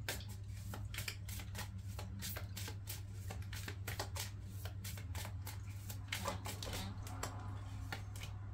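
A deck of tarot cards being shuffled by hand, a continuous run of quick, light card-on-card flicks, with a steady low hum underneath.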